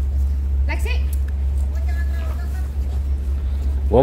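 A steady low rumble, with faint, brief voices in the background.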